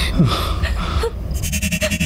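A wavering, rapidly pulsing electronic tone sets in about one and a half seconds in, trembling about nine times a second at a steady pitch: an eerie horror-show sound effect.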